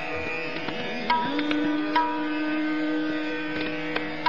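Hindustani classical music: a long held note over a steady tanpura drone and harmonium, with two ringing tabla strokes about a second apart in a slow tempo.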